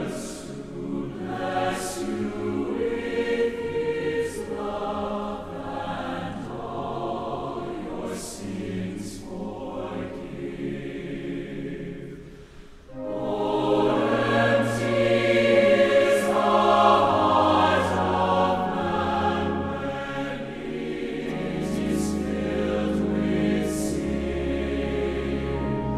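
Large combined choir of university students singing. The singing eases to a short lull about halfway, then comes back fuller and louder.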